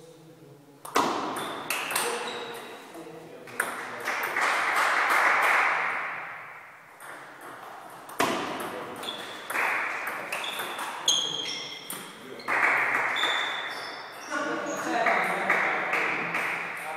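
Table tennis rallies: the ball clicks sharply off the paddles and the table in quick exchanges, each hit ringing briefly. One rally starts about a second in and another about eight seconds in.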